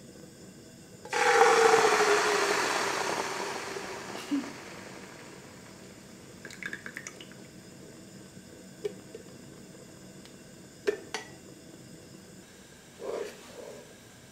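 Coconut milk poured from a can into a pre-heated pot, meeting the hot metal with a sudden loud hiss about a second in that fades away over the next few seconds. A few light knocks of the can against the pot follow.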